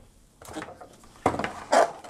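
A plastic smart power strip and its cable being picked up and handled on a wooden table: mostly quiet at first, then a few knocks and rubbing in the second half.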